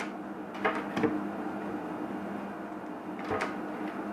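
A few light knocks and clunks against a wooden sink cabinet as hose and pump fittings are handled inside it, one cluster about a second in and another near the end, over a faint steady hum.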